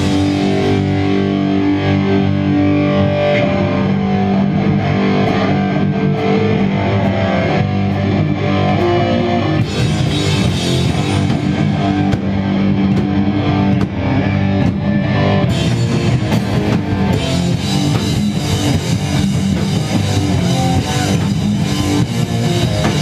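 Hardcore punk band playing live: distorted electric guitars and bass over a drum kit, loud and continuous, with cymbals growing brighter partway through.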